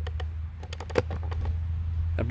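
Handling noise: a run of light clicks and taps, one sharper about a second in, over a steady low rumble.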